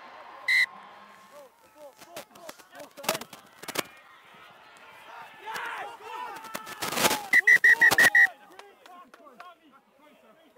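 Rugby match sound from pitchside: crowd and players' shouts, with one short referee's whistle blast about half a second in and sharp knocks a few seconds later. The loudest part comes near the end as a try is scored: a rush of noise with a rapid string of short, high whistle pips.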